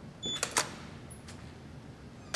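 A few sharp clicks over quiet room tone: a brief high chirp, then two clicks about half a second in and a fainter click a little over a second in.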